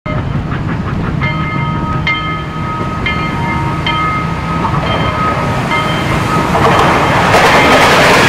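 Train running on the rails with a steady low rumble, and short high ringing tones about once a second in the first half. A rushing noise builds louder from about two-thirds of the way in as the train comes by.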